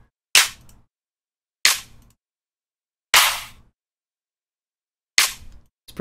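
Electronic clap samples from a future bass drum pack, previewed one after another in a music program's sample browser. There are four separate sharp claps, each with a short tail, a second or two apart. The third clap is longer and fuller than the others.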